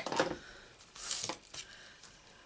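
Crafting handling noises: a light tap or click as a small tool and strip of cardstock are handled on a craft mat, then a brief paper rustle about a second in.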